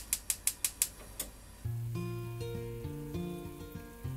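Gas stove burner's spark igniter clicking rapidly, about six clicks a second, stopping a little after a second in. Background music with bass notes then begins.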